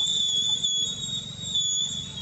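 A steady high-pitched whine, wavering slightly in pitch, over a faint low rumble.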